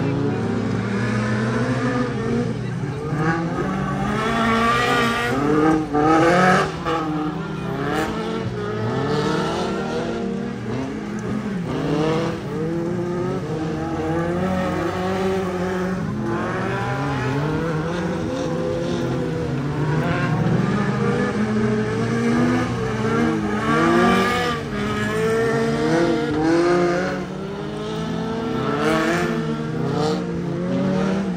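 Several stock cars racing on a dirt oval, their engines revving up and dropping again as they accelerate down the straights and lift for the turns, many engine notes overlapping.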